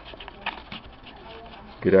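Faint handling noise with a couple of light clicks about half a second in, as a small wooden cowl piece is pulled off a homemade ducted-fan housing.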